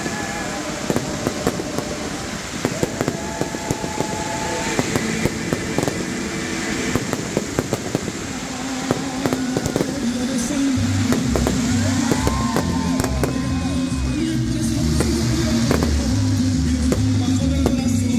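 Fireworks display: rapid pops, bangs and crackling of rockets and aerial shells. About halfway through, music with a heavy pulsing bass comes in and grows louder while the bangs thin out.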